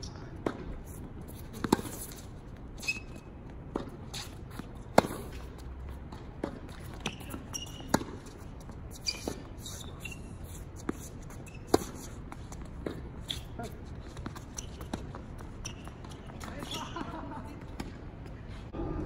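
Tennis rally on a hard court: sharp pops of the ball off the rackets and its bounces on the court, coming about once a second with some louder than others.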